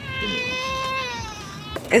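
A baby's long whining cry: one held, high note that dips in pitch and fades near the end.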